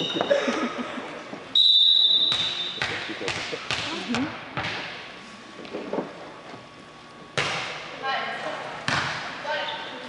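A volleyball referee's whistle blows one steady blast about a second and a half in, signalling the serve. It is followed by sharp ball thuds on the gym floor and off players' arms, with crowd voices echoing in the large gym and rising near the end.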